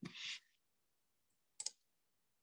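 Mostly near silence, with a brief hiss at the very start and one sharp click about one and a half seconds in.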